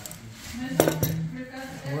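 Hand-held fibre optic cleaver being opened and handled after cleaving a fibre, with two sharp clicks of its metal clamp and lid close together about a second in.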